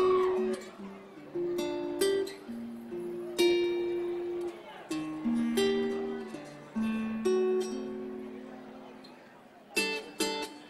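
Solo acoustic guitar opening a song live: a slow melody of single plucked notes, each ringing and dying away. Seven seconds in, a long note fades out, and a quicker run of plucked notes starts near the end.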